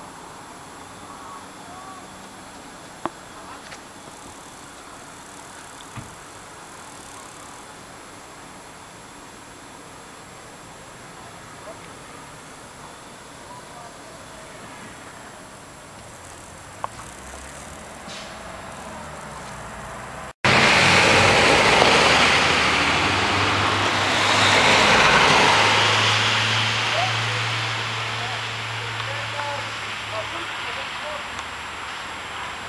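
A fire-service vehicle close by: a loud rushing noise with a steady low engine hum that swells and then slowly fades. Before it comes a faint, even background with a few sharp clicks.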